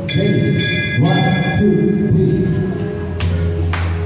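Live devotional bhajan music from harmonium, bamboo flute and tabla. Sustained reed and flute notes fill the first half, and from about three seconds in the tabla's deep bass drum rings under sharp strokes.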